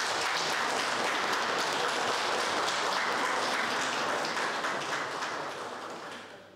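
A room of people applauding, a dense steady patter of many hands clapping that fades out near the end.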